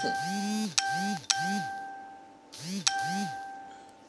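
Phone notification chimes: three ding tones in the first second and a half, then another near three seconds in, each a steady two-note tone that rings on and slowly fades.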